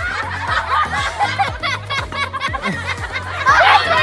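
Several people laughing and giggling over background music with a steady beat and bass line; the laughter swells near the end.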